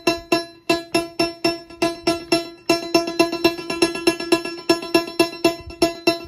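Eurorack modular synthesizer playing a sequenced percussion pattern: a quick, steady rhythm of short, pitched metallic hits on a single note, each decaying fast.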